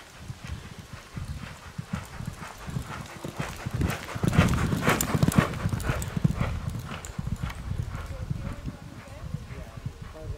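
Hoofbeats of a cantering racehorse on a soft all-weather gallop, a quick rhythm of dull strikes. They grow louder as the horse nears, are loudest about halfway through, then fade as it moves away.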